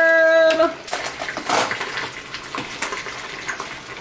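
Meatballs in thick gravy stirred in a pan with metal tongs: wet, splashy noise with scattered small clicks. A voice holds a single note for the first half-second or so before the stirring is heard.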